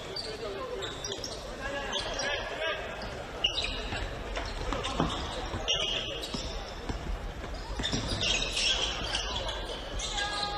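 A basketball bouncing on a hardwood court as it is dribbled in live play, with a couple of sharper thumps about three and a half and five seconds in. Players' and bench voices call out in the large hall.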